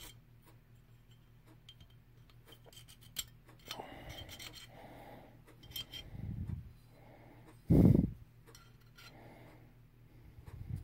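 Quiet handling of an aluminium AR lower receiver and a magazine catch: small metal clicks and clinks with short rubbing sounds as the catch and its release button are fitted. One louder, deep thump comes just before eight seconds in.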